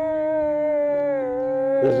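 Several people holding one long vocal note together, an "ooh" or hum, at different pitches; the highest voice slowly sinks in pitch, and a deep male voice joins near the end.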